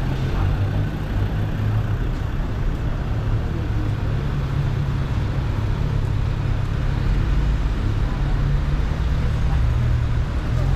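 City street traffic: a steady low rumble of cars and vans running along the road, with no single vehicle standing out.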